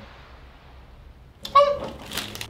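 A short, high-pitched vocal squeal about one and a half seconds in, after a moment of quiet, followed by a breathy hiss: a pained whimper as the eyes begin to water.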